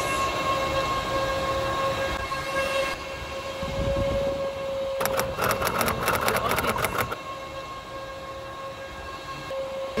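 Steady, high-pitched machine whine with overtones from the powered equipment in an open telecom electrical cabinet. A burst of rapid clicking comes about five seconds in and lasts two seconds, and there is a low thump just before it.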